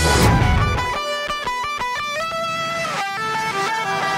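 Instrumental break in an acoustic rock song. The full band ends on a cymbal crash at the start, then about a second in drops away, leaving a lone guitar playing a line of single notes.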